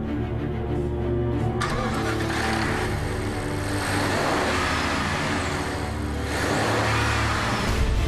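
A BMW 750Li sedan driving by, its twin-turbo V8 and tyres making a rushing noise that comes in suddenly about a second and a half in and swells and fades twice, over steady background music.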